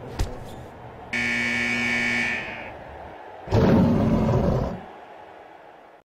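A short thud, then a steady buzzer tone for about a second and a half, then a loud bear roar lasting about a second that fades away.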